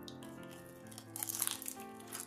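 Crisp crunching of a bite into fried shrimp tempura: a short burst of crackling a little past a second in, over soft piano music.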